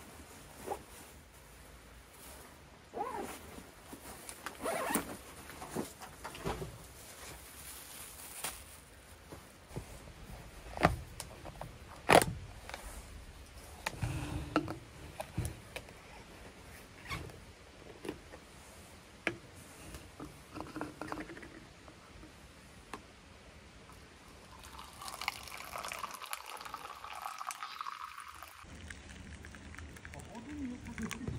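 Objects handled and set down on a wooden table, with rustling and scattered knocks and clicks, two sharper knocks about 11 and 12 seconds in. Near the end, tea is poured from a thermos into its plastic cup.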